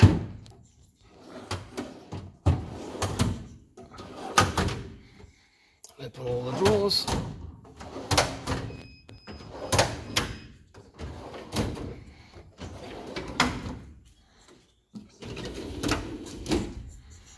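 Steel drawers of a Mac Tools tool chest being handled, a series of sharp clicks and clunks from the drawer runners and fronts every second or two.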